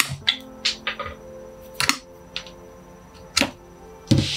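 Metal bonsai branch cutter working on a young ash tree's branch: a string of sharp, irregular clicks and cracks as the jaws close on the wood, over steady background music.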